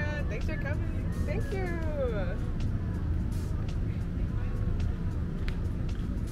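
Steady low rumble of outdoor street noise and traffic, with a voice heard briefly in the first two seconds and a few faint clicks.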